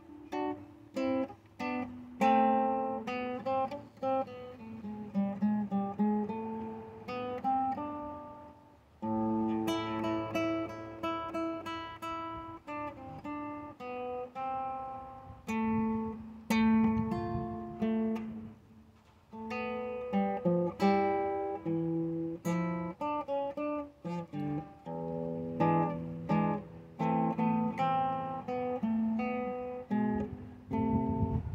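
A solo classical-style acoustic guitar playing a flamenco-style piece: fingerpicked notes and melodic runs broken up by sharp strummed chords, with two brief pauses, about a third and about two-thirds of the way through.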